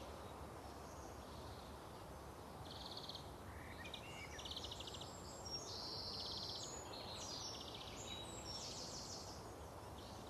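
Small birds chirping and trilling, a run of short high calls from about three seconds in, over a steady outdoor background hiss.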